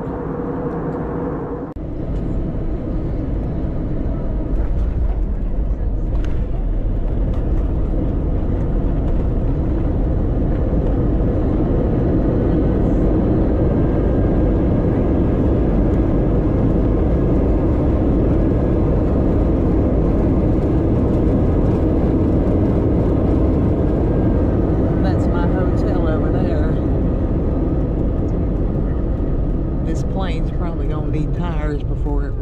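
Jet airliner cabin noise during the landing rollout: a loud steady roar of engines and rushing air heard through the fuselage. It swells a few seconds in and then holds steady.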